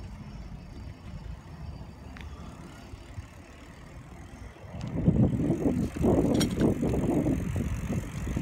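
Bicycle being ridden, with a low rumble from its tyres and frame that grows much louder and rougher about five seconds in.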